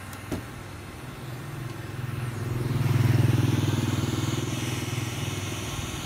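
A motor vehicle's engine passing close by, with a low, rapidly pulsing note. It grows louder to a peak about three seconds in, then fades away.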